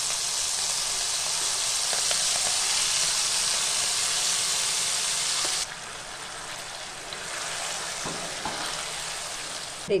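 Wet coriander-leaf and tamarind paste sizzling in a kadai of hot oil with whole garlic cloves and dried red chillies, stirred with a wooden spatula. The loud frying hiss drops suddenly to a quieter sizzle a little past halfway.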